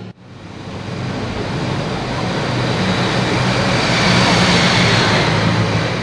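A car driving up, its engine and tyre noise growing louder over the first second and then holding steady.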